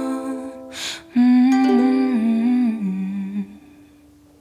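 A woman humming a slow closing phrase that falls in pitch over softly ringing ukulele notes, with a breath drawn about a second in. The voice stops a little past three seconds, and the last ukulele note rings on and fades near the end.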